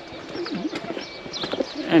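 Quiet outdoor background with faint, indistinct voices in a pause between spoken lines; a man starts speaking right at the end.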